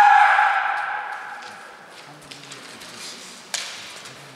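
A kendo fighter's drawn-out kiai shout, held on one pitch and fading away over the first second or so. About three and a half seconds in comes one sharp knock.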